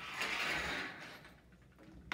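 Small plastic items being handled and shifted on a tabletop: a brief rustling scrape lasting about a second, then quiet handling.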